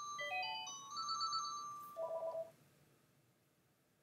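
Phone ringtone: a quick rising run of electronic notes ending on a held note that fades, followed just after two seconds by a short pulsing tone.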